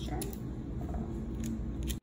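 Tape being snipped and handled to fasten sublimation paper onto a glass candle jar: a sharp click or snip shortly after the start and a quick cluster near the end, over a steady low hum.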